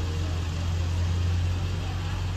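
Steady outdoor background noise: a constant low, engine-like hum under an even hiss, with no change in level.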